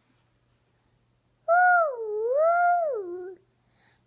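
A toddler's single long, wavering vocal sound, a pretend race-car noise: it starts about a second and a half in, its pitch dips, rises again and then falls away, lasting almost two seconds.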